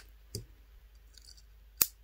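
Steel screwdriver bit clicking into the magnetic slot on the front of a Cattleman's Cutlery Ranch Hand multi-tool: a faint tap about a third of a second in, then one sharp click near the end.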